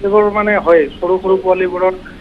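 Speech only: a voice talking over a telephone line.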